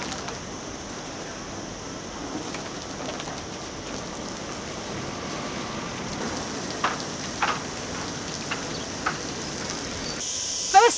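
Steady outdoor background noise of a marina, an even hiss with no clear single source, with a few short clicks or knocks in the second half.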